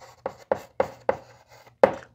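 Chalk writing on a blackboard: about five sharp tapping strokes, roughly three a second, as letters are written.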